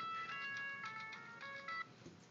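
Tinny music from an iPhone's small built-in speaker, acoustically amplified by a Griffin AirCurve passive horn stand. The melody fades gradually and stops abruptly near the end as playback is paused.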